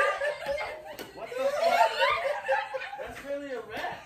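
Several people laughing hard together in repeated bursts.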